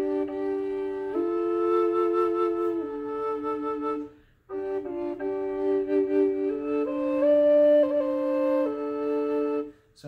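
Low D drone Native American flute played: one chamber holds a steady low drone note while the other plays a slow melody of stepping notes above it. There is a brief break for breath about four seconds in, and the playing stops just before the end.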